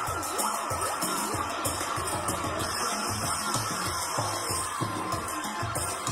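Live psychedelic music: a steady low pulse of about three beats a second, with a hissing high layer and gliding tones above it.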